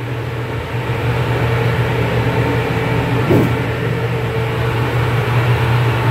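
Electrak 1 duct cleaning vacuum collector running steadily at 15 amps on its variable frequency drive, a low drone with a rush of air drawn through the steel ductwork as the dampers are being closed. A brief sound stands out about three seconds in.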